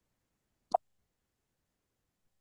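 Near silence broken once, under a second in, by a single short click.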